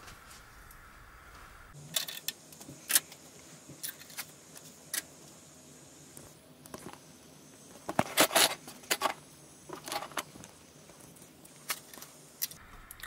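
Scattered clicks and light rattles of hard plastic and metal parts being handled inside a Dell R710 server chassis as the SAS cables and a black plastic cable holder are unclipped and lifted out. The clicks start about two seconds in and come most thickly around eight seconds in.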